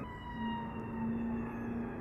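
A police siren wailing, its tone sliding slowly down in pitch, with a steady low hum under it from about half a second in.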